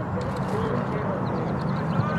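Distant voices of players and spectators calling out across an open soccer field, over steady low background noise.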